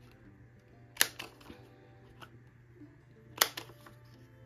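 Handheld corner rounder punch snapping through paper as corners are notched: two sharp clicks, about a second in and near the end, with a fainter click between.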